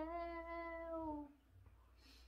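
A woman's voice stretching out the last word of a sentence into one long held note that sags slightly in pitch before stopping about a second and a half in, followed by quiet room tone.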